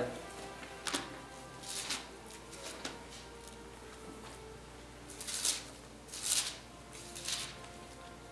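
Thin Bible pages being turned and leafed through: six short, soft paper rustles, three in the first few seconds and three more later on.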